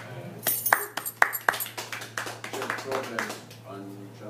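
Scattered hand claps from a small club audience, a handful of separate sharp claps in the first couple of seconds, with voices mixed in.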